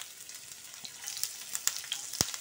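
Chopped garlic and ginger frying in hot oil in a pan: a faint steady sizzle with scattered crackling pops that grow more frequent about halfway through.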